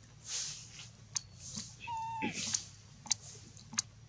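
Baby long-tailed macaque handling and chewing food among dry leaves: soft rustles and a few sharp clicks, with one short squeak about two seconds in that drops in pitch.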